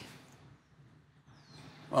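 A quiet pause in dialogue: faint background hiss, with one faint, short, high-pitched sweep about a second and a half in.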